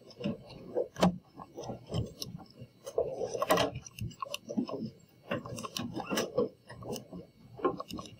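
TI-84 Plus graphing calculator being set down on a desk and its plastic keys pressed: a string of irregular small clicks and knocks.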